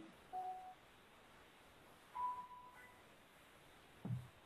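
Two short electronic beeps from a conference-call line, a lower tone followed about two seconds later by a slightly longer, higher one.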